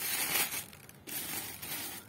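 Thin clear plastic bag crinkling as it is handled and draped loosely back over a bucket, in two bursts: one at the start and a longer one from about a second in.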